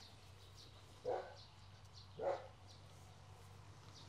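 A dog barking twice, faint, the two short barks a little over a second apart.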